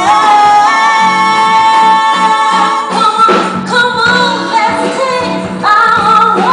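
A woman singing long held notes that slide in pitch, with a live band of bass, drums, keyboards and guitar playing behind her. A fresh vocal phrase comes in near the end.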